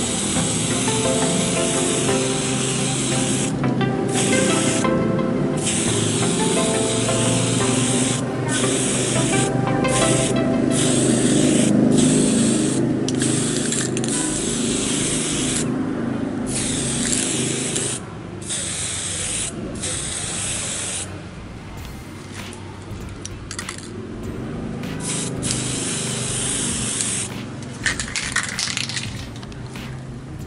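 Aerosol spray paint can hissing in repeated bursts, broken by short pauses, as paint is sprayed onto a hanging motorcycle chain.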